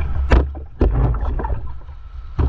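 Whitewater splashing and sloshing against a stand-up paddleboard in shallow surf, in irregular bursts over a low rumble.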